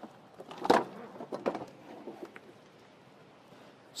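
Floor mat being pulled up from the operator's floor of a Hyundai 30L-9A forklift: one sharp scuff about a second in, followed by a few softer rustles and clicks.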